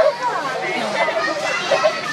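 Background chatter of several people talking at once, children's voices among them.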